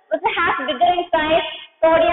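Speech only: a woman talking in short, sing-song phrases.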